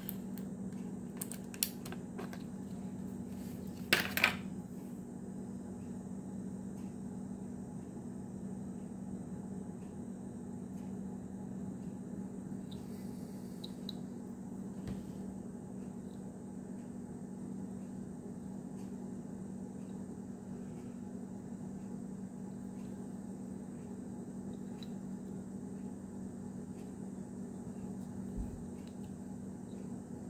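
A steady low hum, with a few sharp clicks and crackles of a clear plastic blister package being handled as a diecast car is freed from it, loudest about four seconds in.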